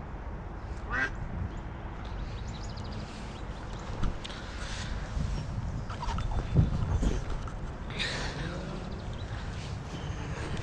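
Ducks quacking: a short call about a second in and a louder run of quacks near the end, over a steady low rumble.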